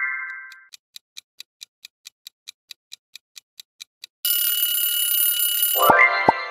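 Countdown sound effect: a clock ticking quickly, about five ticks a second, then an alarm-clock bell ringing for nearly two seconds near the end, signalling that the answer time is up. A rising synth chime fades out at the start, and another begins just as the ringing stops.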